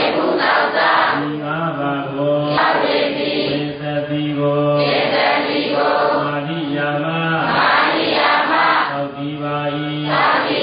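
Buddhist chanting in a low male voice. Each phrase is a run of long notes held at a steady pitch, with a short hissing break between phrases about every two and a half seconds.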